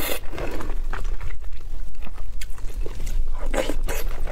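Close-miked chewing of a mouthful of rice in egg sauce, with many short mouth clicks and smacks. Near the end a wooden spoon scoops into the glass bowl.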